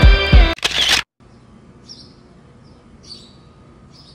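Background music that cuts off about a second in. After it comes quiet outdoor air with a few short, faint bird chirps.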